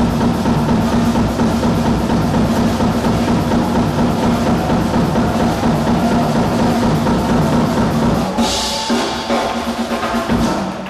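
Live bebop jazz from a saxophone, piano, upright bass and drum kit quartet on an audience recording, with busy drums to the fore. About eight and a half seconds in there is a bright crash and the low end of the band thins out.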